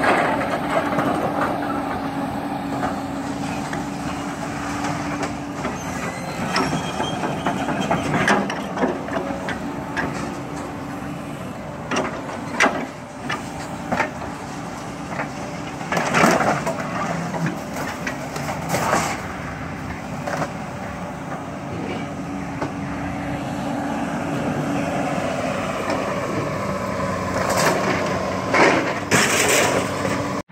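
Komatsu hydraulic excavator's diesel engine running with a steady hydraulic whine as its grapple picks scrap metal off a trailer. Several sharp metal clanks and crashes come from the scrap, the loudest about 16 and 19 seconds in and twice near the end.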